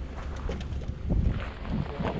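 Wind buffeting an action camera's microphone as a steady low rumble, with a louder gust about a second in.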